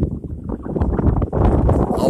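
Wind buffeting the microphone in a moving car, an uneven low rumble that grows louder about a second and a half in.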